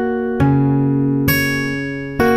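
Acoustic guitar in drop D tuning, fingerpicked slowly: two plucked notes, the first about half a second in and the next about a second later, each left ringing.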